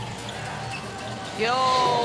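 Crowd hum in an indoor basketball arena during a free-throw attempt, with a long drawn-out shout of "yo" starting about a second and a half in.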